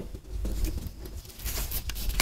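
Fingers tapping and rubbing on a paper sand-art sheet: light scratchy taps and brushing, getting busier near the end.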